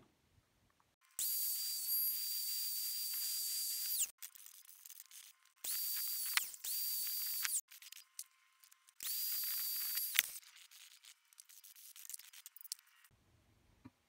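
Small high-speed grinder whining in three bursts of a few seconds each as it cuts a notch into the steel jaw of a Knipex parallel-jaw pliers wrench. The pitch holds steady during each burst and falls away as the grinder is switched off.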